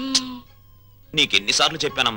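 Telugu film dialogue: a voice speaking briefly, a short pause of about half a second, then more speech.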